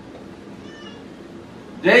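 A quiet pause in a man's speech, with only the room's steady background and a faint, brief high-pitched sound just under a second in; the man's voice starts again loudly near the end.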